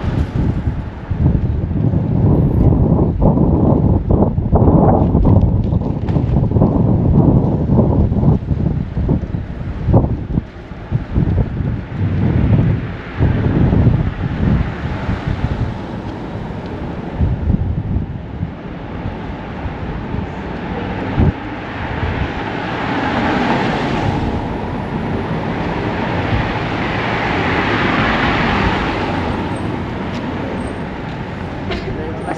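Wind buffeting the microphone in irregular gusts over street ambience for the first half. After that, a car's tyres and engine swell as it approaches along the street, loudest near the end.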